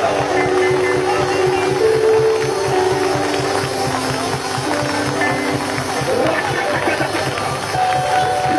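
Church band music: held chords that change every second or two over a quick, steady beat.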